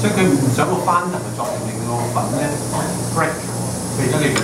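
People talking over a steady low hum.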